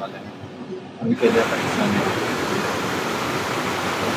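Rain-swollen mountain stream rushing and cascading over boulders, a steady roar of water that becomes much louder about a second in.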